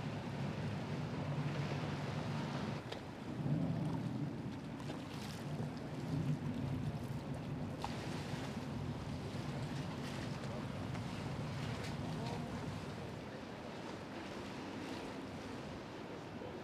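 Boat engine running on the water in a harbour, a steady low hum, with wind on the microphone; the hum eases a little near the end.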